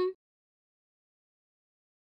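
The clipped end of a woman's spoken word, held on one level pitch, then near silence for the rest.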